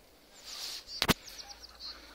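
A sharp click about a second in, followed by a quick series of short, high, falling bird chirps.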